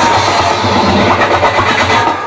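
Electronic dance music (house/techno) from a live DJ set over a PA. In this stretch the regular kick drum is absent, leaving a dense mid-range passage without the beat.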